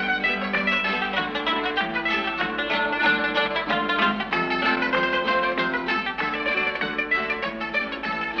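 Instrumental music on plucked strings, played in quick, busy runs of notes with no singing.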